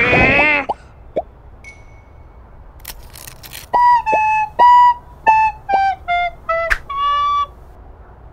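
A short jingle played on a flute-like wind instrument: about eight quick notes that mostly step downward and end on a longer, higher note. It opens with a brief shouted voice and a couple of light clicks.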